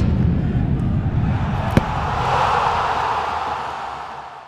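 Logo intro sting of sound design: a deep rumbling boom fading away, a single sharp hit a little under two seconds in, then a rushing whoosh that swells and fades out.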